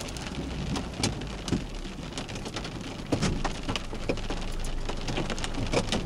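Rain mixed with hail drumming on a car's windshield and roof, heard from inside the car: a steady hiss dotted with many sharp ticks, over a low rumble.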